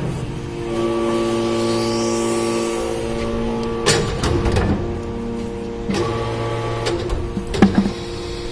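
Hydraulic iron-chip briquette press running: a steady pitched hum from the machine, broken by a metallic clank about four seconds in and a couple of sharp knocks near the end.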